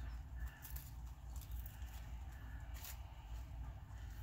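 Faint soft rustling and tearing of a thin paper napkin being ripped apart by hand, over a low steady hum.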